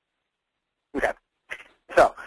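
Dead silence for about the first second, then a man's brief wordless vocal sound, a fainter short one after it, and his speech beginning at the very end.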